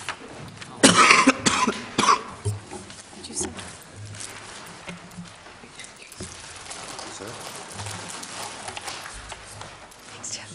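A person coughing a few times in quick succession about a second in, then low room noise.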